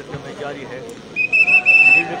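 Referee's pea whistle blown once: a single high, trilling blast of just under a second, starting a little past halfway through.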